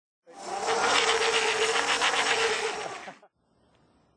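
A loud, steady mechanical whir with one constant whine running through it. It cuts off abruptly a little over three seconds in, and a brief faint noise follows.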